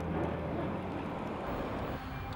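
Prototype electric DeLorean DMC-12 rolling slowly on pavement. What is heard is a steady hush of tyre and road noise, with almost no motor sound from its electric drive.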